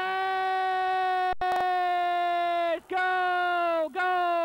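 A football commentator's drawn-out celebratory yell at a goal: one long held cry of almost three seconds, then a second held cry that sags slightly in pitch at its end. A brief dropout cuts the sound about a second and a half in.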